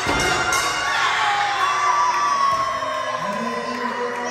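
A small wrestling crowd, many of them children, cheering and shouting, with long high-pitched screams held for a second or more at a time.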